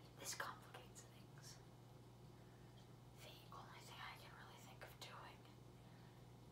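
Faint whispering in short phrases, one near the start and more about three to five seconds in, over a steady low hum.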